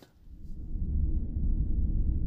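Deep, low rumble that fades in over about the first second and then holds steady, the background sound of the closing end screen.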